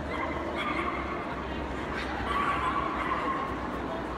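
A dog giving drawn-out whining or howling calls over the murmur of a crowded exhibition hall, one short call near the start and a longer, steadier one through the middle.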